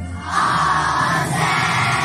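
A children's choir singing together in unison, held notes with short pauses for breath between phrases, one right at the start and another just over a second in.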